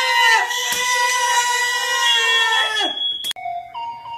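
A person's voice holding one long, high 'ohhh', nearly level in pitch, that breaks off about three seconds in. A sharp click and a few brief steady tones follow near the end.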